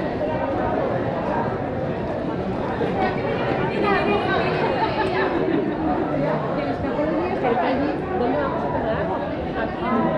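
Chatter of several people talking at once, with nearby voices clearest in the middle.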